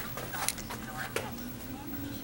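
Faint voices from a VHS tape playing through a small CRT television's built-in speaker, over a low steady hum, with a couple of light clicks.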